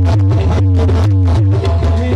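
Live qawwali music played loud through a PA: pitched melody lines over even hand-percussion strokes about four a second, with a heavy, booming low end.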